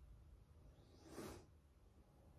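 Near silence: room tone, with one short, soft rush of noise a little over a second in.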